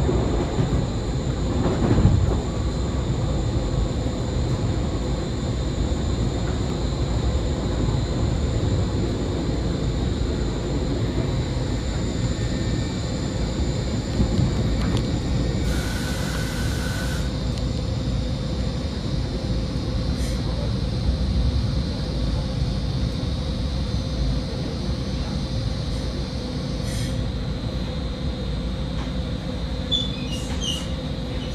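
Caltrain passenger train running along the track, heard from inside the car: a steady rumble of wheels on rail with a constant hum. A short hiss comes about sixteen seconds in and lasts a second and a half.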